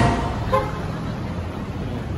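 Street traffic noise with a short car-horn toot about half a second in, over a steady low rumble of traffic. A loud rush of noise is dying away at the very start.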